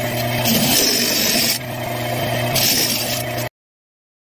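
Homemade disc sander running, its sanding disc scraping against a wooden piece pushed on a sliding jig, with the motor humming underneath. The sound shifts about one and a half seconds in and cuts off suddenly near the end.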